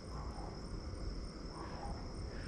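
Crickets chirping, a faint steady high-pitched trill over low background noise.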